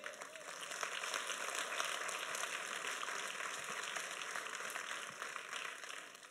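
Congregation applauding, building over the first second, holding steady, then dying away near the end.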